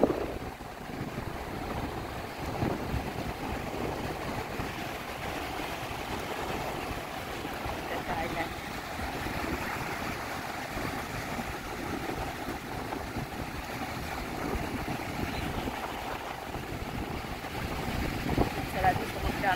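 Surf breaking and washing up a sandy beach in a steady wash, with wind buffeting the microphone.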